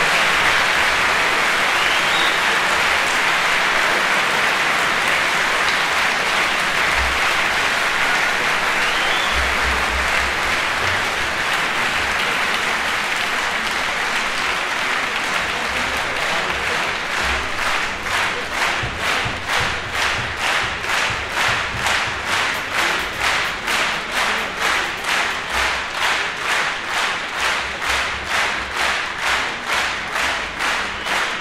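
Large concert-hall audience applauding after the performance. About halfway through, the clapping turns into rhythmic clapping in unison at about two claps a second.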